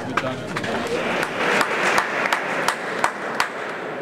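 About ten sharp, irregular clacks or knocks a few tenths of a second apart, over a background murmur of voices.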